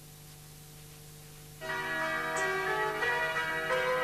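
Low steady hum, then about one and a half seconds in a bell-like chiming jingle starts suddenly and rings on in sustained tones: the music of a TV channel ident.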